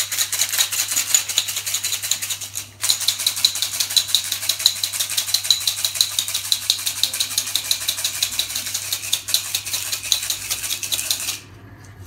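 Ice rattling fast and hard inside a metal cocktail shaker as it is shaken with a splash of dry vermouth, to chill and frost the shaker. There is a brief break a little under three seconds in, and the shaking stops near the end.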